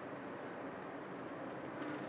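Scissors cutting slowly through cardstock, a faint steady rasp of the blades working along the sheet.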